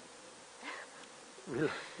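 Quiet room tone with a thin, steady buzzing hum. A person's voice starts up about one and a half seconds in.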